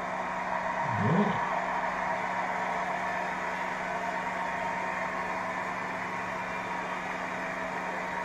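A steady hum with a hiss over it, an even whirring room noise with one fixed low tone. A brief low sound rises and falls about a second in.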